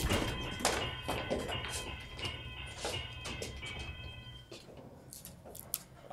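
A stage sound effect of an electric door buzzer ringing in short repeated bursts, with heavy knocking and thuds over it, loudest at the start; the buzzing stops about four and a half seconds in. It is the alarm of the raid on the hiding place.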